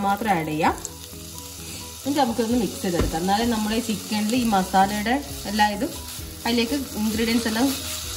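Chicken, onion and egg filling sizzling in a nonstick pan as it is stirred with a wooden spatula, with a single knock about three seconds in. A wavering melody plays over it and drops out briefly about a second in.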